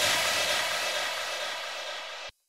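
The closing tail of an electronic dance track: a hissing noise wash, strongest in the highs, fading steadily as the bass drops away, with no beat.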